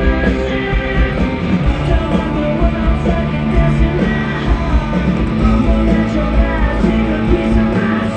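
Live rock band playing loud through a concert sound system: distorted electric guitars and a male lead vocal over a heavy low end.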